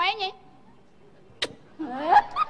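A brief bit of speech, then a single sharp smack about one and a half seconds in, followed by a voice rising into a cry near the end.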